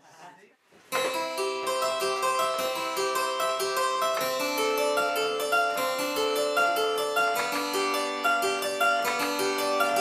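A home-made spinet, a small harpsichord, being played: a brisk, continuous run of plucked notes over lower held notes, starting about a second in.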